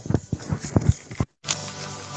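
A quick run of sharp knocks or taps, about eight in a second. Then the audio cuts out completely for a split second and comes back with a steady hum as the phone video call connects.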